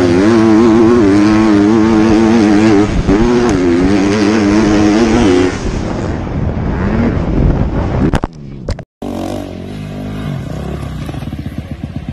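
Dirt bike engine heard from the rider's helmet camera, loud and running hard with its note wavering up and down as the throttle works over the track, with wind rushing past. The engine note drops away about five and a half seconds in, and after a cut just before nine seconds a steadier, quieter engine sound runs on.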